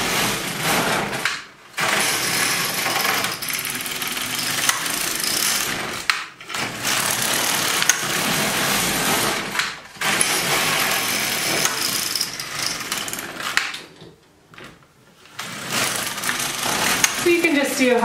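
The carriage of a Silver Reed LK150 mid-gauge knitting machine is pushed back and forth across the needle bed, knitting rows of waste yarn to scrap off the work. Each pass is a steady rasping rattle of the needles, with about five passes separated by short pauses as the carriage changes direction.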